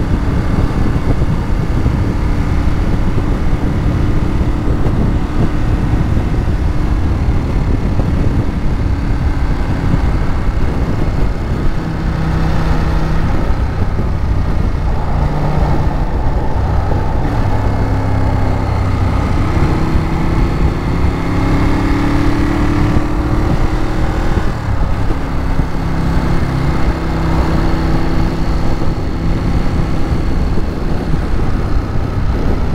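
Ducati Monster 821's 821 cc Testastretta L-twin engine running at road speed, recorded on board, its note stepping up and down several times in the second half as the throttle and gears change. Wind rushing over the microphone.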